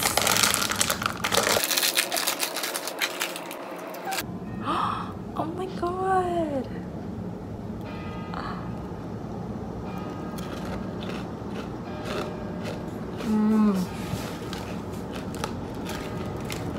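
Plastic snack bag crinkling loudly for the first few seconds as it is handled and opened, then quieter crunching of a puffed potato snack being eaten.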